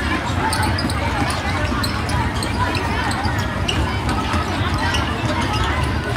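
Footsteps of a large crowd of children running across a sports-hall floor, a steady patter of many feet, with children's voices throughout.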